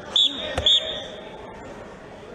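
Two short, high blasts of a referee's whistle about half a second apart, with a sharp thud between them.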